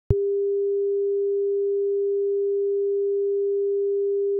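A single steady pure electronic tone, mid-pitched and unchanging, that switches on with a click just after the start.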